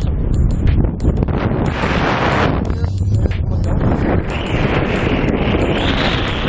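Wind buffeting the camera's microphone during a tandem parachute descent under an open canopy: a loud, uneven rushing, strongest in the low end, that swells and eases.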